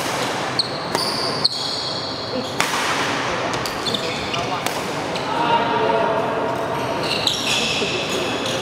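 Badminton rally: sharp cracks of rackets striking a shuttlecock, several times, with court shoes squeaking on the sports floor, echoing in a large hall.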